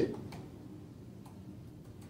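A few faint clicks from a laptop being worked as the on-screen document is moved on, in a quiet room.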